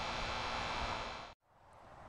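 Steady outdoor background noise, a low hiss with a faint hum, that cuts off suddenly about a second and a half in, then faint hiss slowly fades back up.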